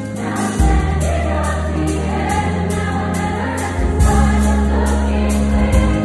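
A large girls' choir singing together over a musical accompaniment with strong sustained bass notes that change every second or two.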